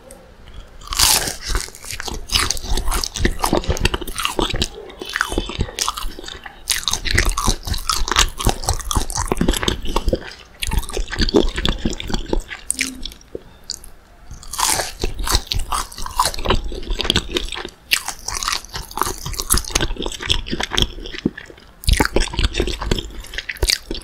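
Close-miked biting and chewing of McDonald's Spicy Chicken McNuggets: the crisp breaded coating crunches in rapid crackles. Loud bursts of crunching come about a second in, midway and near the end.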